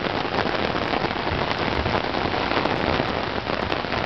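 Heavy rain pouring down on a street and on an umbrella held overhead: a steady, dense hiss peppered with many sharp drop hits.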